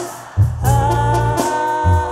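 Live Mexican banda music: after a brief dip at the start, the band comes back in about half a second in, with the tuba's bass line and a long held high note.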